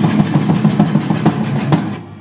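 Thrash metal band playing: distorted electric guitar and bass over a drum kit with regular bass-drum and cymbal hits. The music falls away just before the end.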